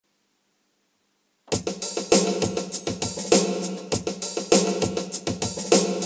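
A drum-kit beat with hi-hat and kick, played as a backing track for a funk bass exercise, starting about a second and a half in after silence.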